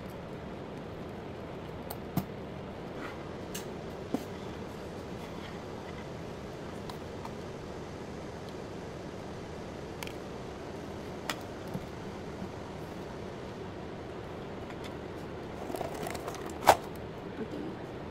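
Scattered light clicks and rustling as a pleated paper lampshade and its wire frame are handled and fitted on a ceramic lamp base, over a steady background hiss. Near the end the rustling picks up, with one sharp, louder click.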